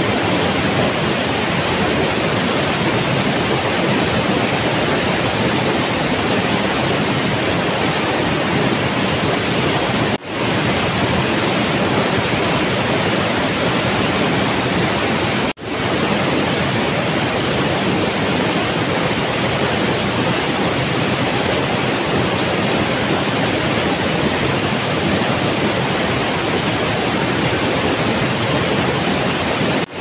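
Waterfall plunging into a rock pool: a loud, steady rush of falling water. It cuts out briefly twice, about ten and fifteen seconds in.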